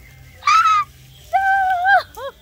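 A young woman shrieking twice as she is sprayed with water from a garden hose: a short high squeal, then a longer, steadier one.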